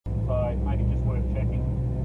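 Triumph TR7's V8 engine idling steadily while the car sits stationary, heard from inside the car, with voices over it.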